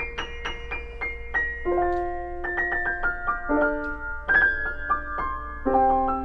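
A C. Bechstein A208 grand piano played in the treble: a quick succession of single high notes, then a series of sustained chords that change about once a second.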